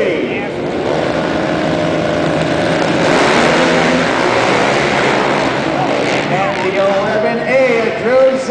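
A pack of racing quads (ATVs) revving on the start line and accelerating away together, the engines loudest about halfway through.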